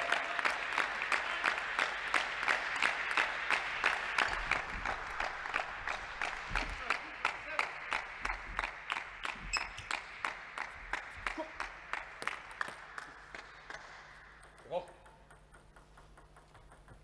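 Rhythmic clapping, about three claps a second, over a haze of voices, applause for a point just won in a table tennis match, slowly dying away. A brief rising squeak near the end.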